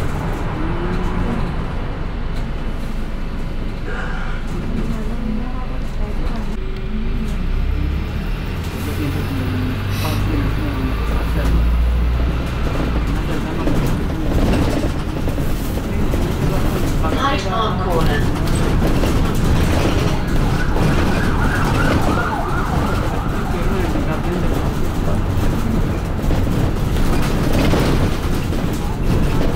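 Steady running noise inside a London double-decker bus heard from the upper deck: low engine and road rumble, heavier for a few seconds near the middle, with the body's rattles over it.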